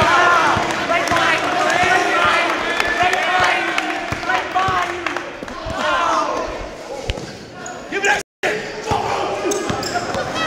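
Basketball being dribbled on a gym floor, bouncing repeatedly, over the chatter of spectators' voices in a large hall. The sound cuts out for a moment near the end.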